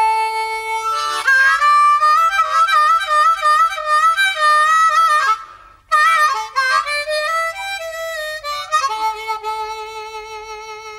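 Harmonica playing a bluesy melody of bent, wavering notes. It breaks off briefly a little past halfway, then comes back and settles into a long held note near the end.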